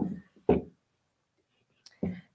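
A woman's soft, breathy speech sounds in the first half second, then near silence with one faint click near the end.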